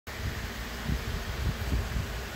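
Low, steady rumbling background noise with small irregular bumps and no clear pitched source.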